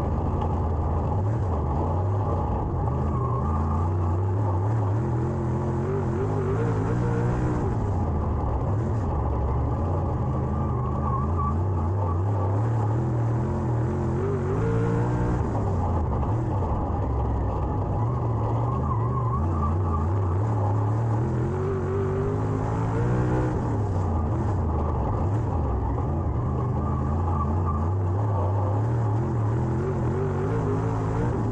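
Dirt late model's V8 engine racing, heard from inside the cockpit: the engine note climbs on each straight and drops back off the throttle into the turns, in a cycle that repeats several times, about every seven to eight seconds.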